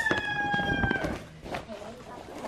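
A rooster crowing: the long drawn-out last note of the crow, sinking slightly in pitch and cutting off about a second in. Under it, the crackle of a non-woven shopping bag being handled.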